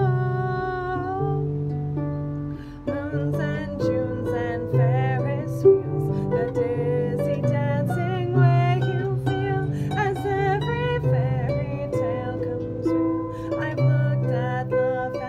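Lever harp played by hand, plucking a melody over chords. A woman's held sung note fades out about a second in, and the harp then carries an instrumental passage with wordless vocalising over it.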